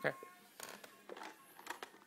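A man's voice briefly at the start, then a few light clicks and knocks of plastic toys being handled by a toddler.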